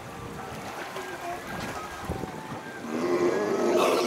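Pool water sloshing and lapping as seals swim, with a voice rising in the last second and a brief splash at the very end.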